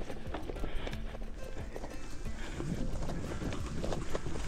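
Kross Esker 6.0 gravel bike rolling over bumpy meadow grass: a run of irregular clicks and rattles from the bike over a low rumble.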